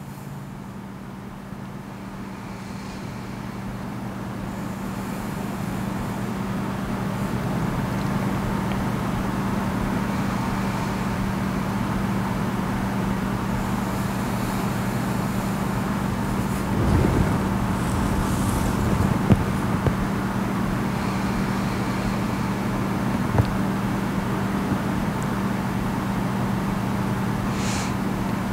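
Steady background noise with a low hum, growing louder over the first several seconds and then holding steady, with a few brief soft knocks later on.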